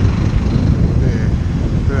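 Low, steady rumble of wind buffeting the microphone of a camera riding on a moving bicycle, mixed with busy road traffic passing alongside.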